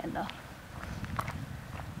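A few soft footsteps on a path over a low rumble, as the person holding the camera walks.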